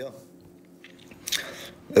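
A pause in a man's talk, holding only faint mouth noises and a short hissy breath about a second and a half in, just before he speaks again.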